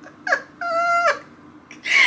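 A woman laughing: a short falling laugh, then a high, steady squeal held for about half a second.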